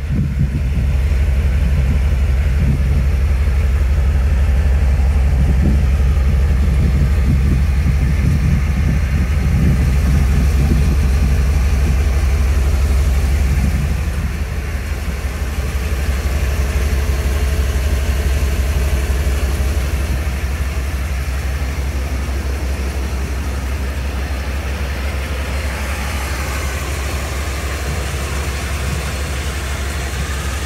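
1987 Chevrolet C20 pickup engine idling steadily, with a deep, even exhaust hum that drops a little in level about halfway through.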